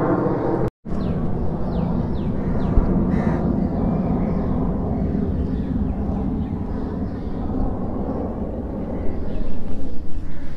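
Steady outdoor background noise with a low rumble. It cuts out completely for an instant just under a second in, and a few short, high, falling chirps come through in the first few seconds.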